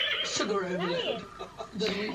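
A woman's voice making a wordless 'mmm' sound while tasting food, its pitch rising and falling in a curve, softer than her talk; ordinary speech starts again near the end.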